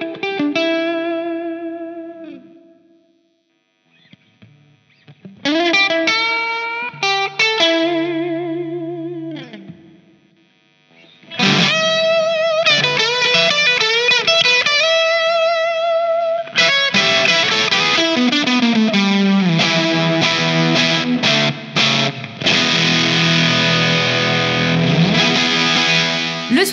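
Electric guitar played through a UAFX Woodrow '55 amp-simulator pedal modelled on a 1955 Fender tweed amp, recorded direct with no amplifier. Short single-note phrases with bends and vibrato ring out between two brief pauses. About two-thirds of the way in, dense strummed chords take over.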